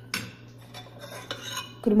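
A metal spoon clinking against a cooking pot: one sharp clink just after the start, then a few lighter taps about a second in, as in stirring soup.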